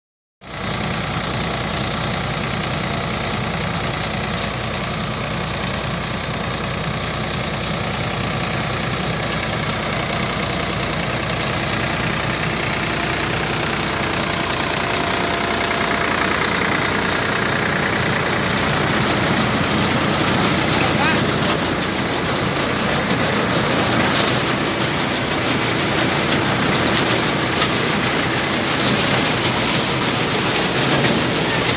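Tractor-driven groundnut thresher running steadily under load, its noise blended with the Farmtrac 45 HP tractor's diesel engine as groundnut vines are fed into the machine.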